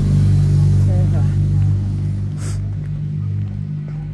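A steady low hum made of several held tones, unchanging in pitch, with a brief snatch of voice about a second in and a short hiss-like burst halfway through.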